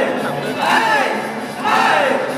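Crowd of spectators around a breakdance circle shouting together about once a second, each shout rising and then falling in pitch.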